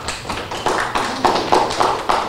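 Audience applauding, a dense patter of irregular separate claps.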